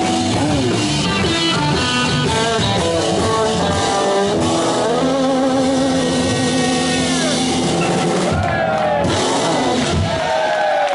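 Live rock band playing: electric guitar holding long sustained notes, some with vibrato, over drums, with pitch slides near the end.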